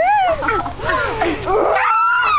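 Girls' high-pitched squeals and shrieks, several overlapping voices rising and falling in pitch, with no words.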